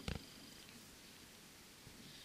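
A brief low thump just after the start, then a quiet background with a few faint high chirps.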